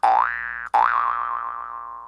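Cartoon 'boing' sound effect, struck twice, each rising in pitch. The second rings on and fades away slowly.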